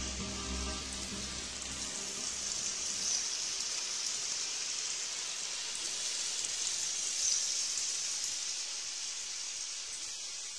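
Background music fades out over the first two seconds, leaving a steady high hiss that swells gently about every four seconds.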